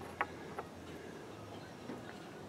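One light click about a quarter second in, as a hand handles a galvanized pipe fitting on a steel rod, over a faint steady background hiss.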